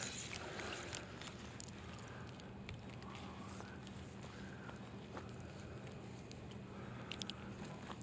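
Quiet outdoor background: a faint steady low hum, with a few soft clicks near the end.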